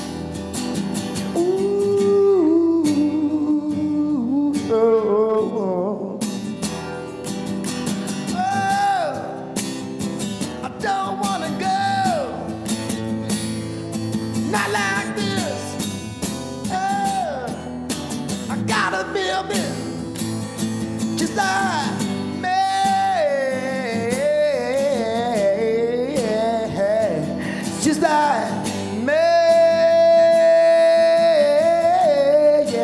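A man singing a song live into a microphone over guitar accompaniment, his voice sliding between held notes with vibrato, a long loud held note near the end.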